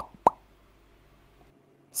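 Two quick mouth pops, one right at the start and one about a quarter second later, each a short plop rising in pitch.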